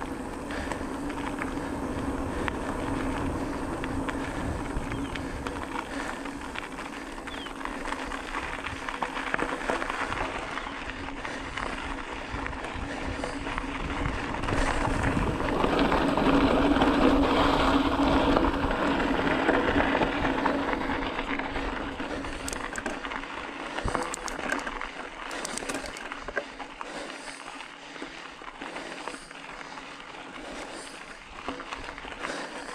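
Bicycle tyres rolling over cracked asphalt and then loose gravel, a steady rushing noise with a constant low hum underneath. It is loudest around the middle, then quieter with scattered crunching clicks toward the end as the ride goes up a gravel climb.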